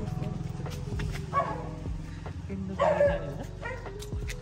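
A dog barking twice, about a second and a half apart, over a steady low hum.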